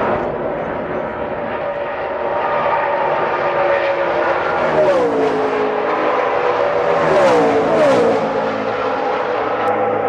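NASCAR stock cars' V8 engines running at high revs on the track, a steady drone with two cars passing: the pitch drops sharply about halfway through and again a couple of seconds later.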